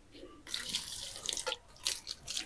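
Water poured from a stainless steel jug onto potted plants, trickling and splashing faintly onto the leaves and soil, starting about half a second in.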